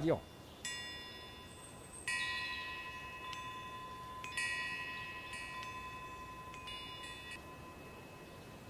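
Small metal chimes ringing faintly with several high, clear tones, struck about five times at uneven intervals, each strike ringing on and fading slowly.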